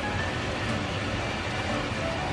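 Frying pan of tomato and meat sauce simmering on the stove, a steady hiss with background music under it.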